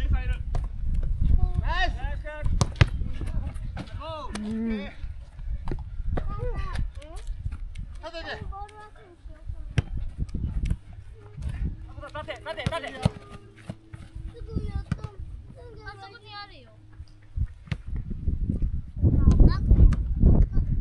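Players shouting and calling to each other on a soccer pitch, with scattered sharp thuds of the ball being kicked, over a low wind rumble on the microphone that swells near the end.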